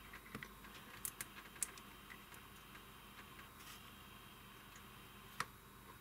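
Faint small clicks and taps of a capacitor's leads being handled at a capacitance meter's test socket, with one sharper click near the end; between them it is nearly quiet, with only a low hum.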